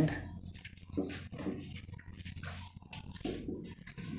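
Marker pen squeaking and scratching on a whiteboard in a run of short, quick strokes as a word is written by hand.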